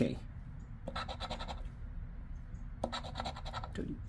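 A scratch-off lottery ticket being scratched to uncover its number spots, in two short bursts of quick scratching strokes, one about a second in and one near three seconds.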